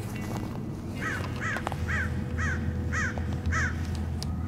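A crow cawing six times in an even series, about two calls a second, over a low steady hum.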